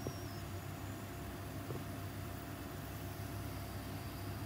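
Steady kitchen background of a low hum and an even hiss while batter cooks in a rectangular frying pan on the stove.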